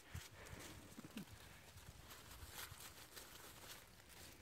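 Near silence, with a few faint ticks and rustles.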